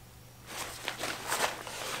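Nylon webbing and Cordura fabric rustling as hands work a haversack's shoulder strap through its adjustment buckle, with a couple of faint ticks.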